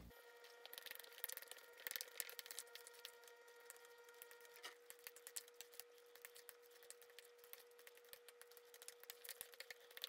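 Faint wet squishing and small clicks of ripe bananas being mashed by hand and with a fork in a mixing bowl, over a faint steady hum whose higher overtones drop out about halfway through.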